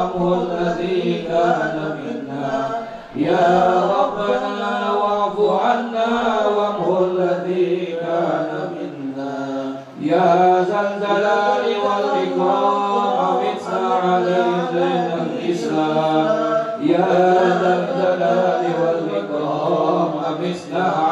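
Men chanting Arabic devotional verses together into microphones in long, held melodic phrases, pausing briefly for breath about three and ten seconds in.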